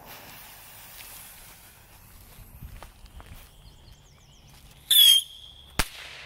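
Butane torch hissing briefly at a bottle rocket's fuse; a few quiet seconds later the Premium Moon Traveler whistling bottle rocket goes off with a short, loud, shrill whistle, followed under a second later by a single sharp bang of its report, which is not too loud.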